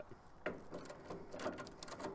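Faint metal clicks and scraping of an adjustable wrench on the stem of an AC condensing unit's vapor service valve as it is turned a little clockwise, a sharper click about half a second in. The valve turns freely and is not stuck.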